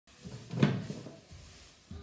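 A knock about half a second in, then softer scuffing and rustling, as paper bedding is scooped out of a glass tank into a plastic bag.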